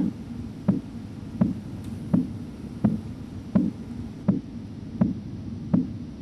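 Korotkoff sounds: the pulse of blood pushing back through the artery under a slowly deflating blood-pressure cuff, a regular knock about every 0.7 seconds. They mean the cuff pressure lies between the systolic and diastolic pressures, here falling from about 100 to 80 mmHg.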